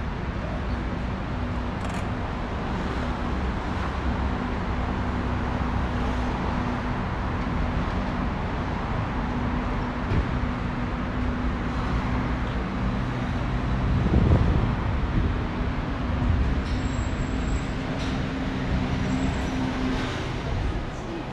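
Road traffic on a city street: a steady low rumble of engines with a faint constant hum. One vehicle passes louder about fourteen seconds in.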